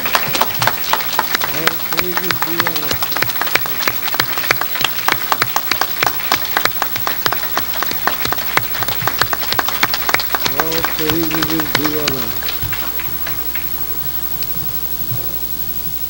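Audience applauding, dense hand claps that thin out and stop about three-quarters of the way through. A voice calls out briefly twice during it.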